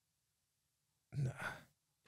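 Near silence for about a second, then a man's short breathy sigh in two puffs.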